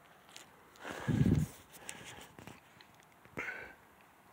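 Handling noise from a phone camera being swung round and carried while walking: a loud, low, muffled thump about a second in, then scattered clicks and scuffs, with a short burst a little after three seconds.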